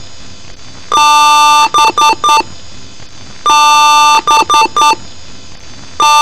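Computer PC-speaker BIOS beep code: one long electronic beep followed by three short beeps, the pattern repeating about every two and a half seconds.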